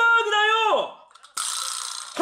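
A man's loud, drawn-out shouted call held at a high, steady pitch, ending about a second in. It is followed near the end by a short hissing noise.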